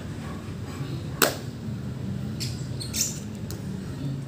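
A person doing burpees on an exercise mat: one sharp thump about a second in, then a few short swishing or puffing sounds near the three-second mark, over a steady low hum.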